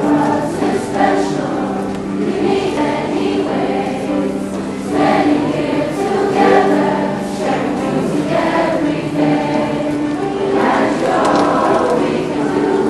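A middle-school concert chorus singing, many young voices together holding and changing notes.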